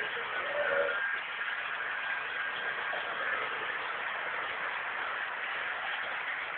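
Steady hissing background noise with no distinct events.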